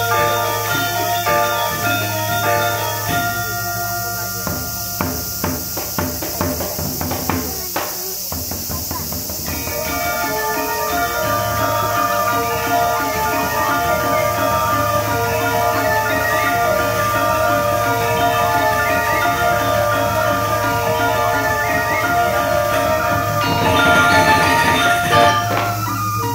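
Balinese gamelan music: bronze metallophones ring out in interlocking tones. From about three to nine seconds in they thin out and sharp percussive strokes stand out, then about ten seconds in the full ensemble comes back in, dense and steady.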